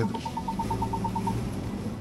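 Rapid electronic beeping from the Ford Bronco, about nine short beeps a second on one pitch, which stops after about a second and a half. Under it is the low, steady drone of the vehicle inside the cabin as it creeps along in low range.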